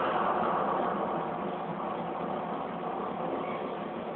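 A steady rushing rumble from an anime battle scene's sound effects, played through a television speaker and recorded on a phone, so it sounds thin and muffled with no deep bass or highs.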